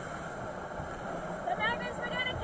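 Steady noise of wind and sea on the deck of an ocean racing yacht in rough water, with a voice starting faintly near the end.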